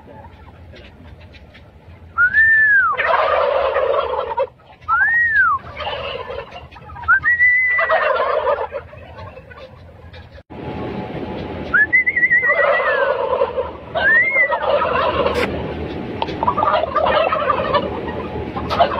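A flock of domestic turkey toms gobbling in loud bursts. Short rising-and-falling whistles come about five times, and each is answered at once by a chorus of gobbles.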